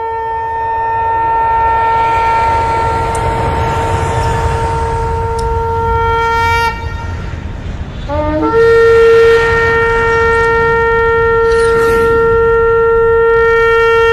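Shofar blown in two long, steady blasts, each opening with an upward slide in pitch. The first blast breaks off about six and a half seconds in; the second begins a second and a half later and is held to the end.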